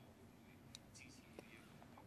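Near silence: the room tone of a conference room heard through a desk microphone, with two faint clicks about a second apart.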